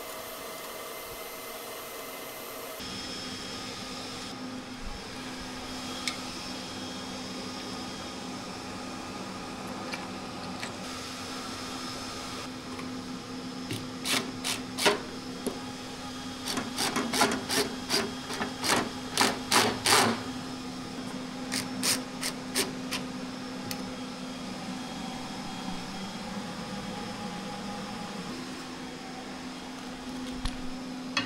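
Cordless screwdriver driving screws through aluminium-profile brackets into a wooden table top: a series of short, loud bursts and clicks from about halfway through, over a steady low hum.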